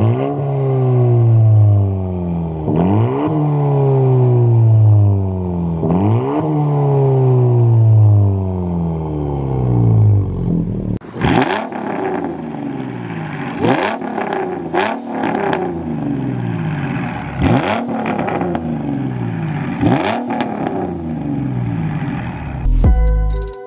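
A 2019 Honda Civic Si's turbocharged four-cylinder revved three times while parked, each rev falling slowly back to idle. Then a 2007 Mustang's 4.0-litre V6, fitted with shorty headers and a cold air intake, revved in a series of quicker blips.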